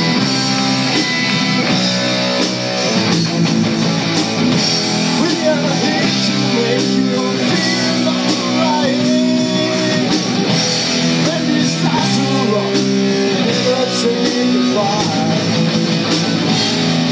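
A live rock band playing a song on electric guitars, bass guitar and drum kit, with steady, loud held chords and notes over the drums.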